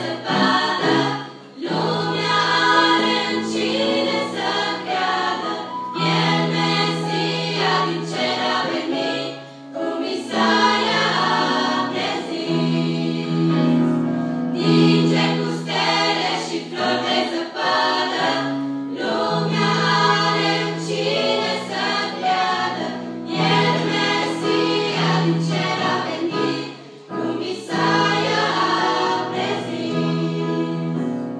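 A girls' choir singing a song in unison and harmony, in long phrases of held notes with brief pauses between phrases.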